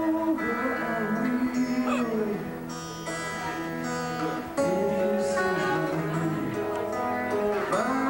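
Live band music: guitar strummed under a man singing into the microphone. The music drops quieter for about two seconds midway, then comes back up.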